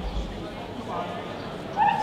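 A Border Collie gives a short, high-pitched yip near the end, with a fainter one about a second in.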